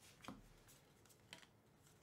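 Faint swishes of 2024 Topps Series 2 baseball cards being slid one by one off a handheld stack, a few soft strokes over a quiet background.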